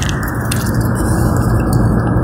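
Steady road and wind noise inside the cabin of a 2011 Toyota Prius cruising at highway speed, about 105 km/h, with a brief click about half a second in.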